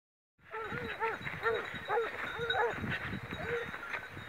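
Pack of hunting dogs giving tongue in quick, repeated yelps on the close track of a wild boar. The yelps start about half a second in and come two to three a second.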